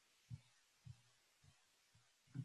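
Faint low thuds of a stylus tapping and pressing on a touchscreen while handwriting, three of them about half a second apart, the first the loudest.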